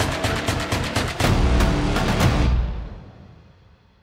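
Outro music with rapid drum hits, swelling into a loud low boom about a second in, then fading out over the last second and a half.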